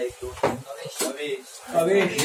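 Short bits of speech in a small room, with a sharp click or knock about a second in.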